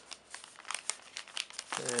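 Thin clear plastic wrapping crinkling and crackling in irregular bursts as it is pulled open off a paper instruction booklet. A voice starts near the end.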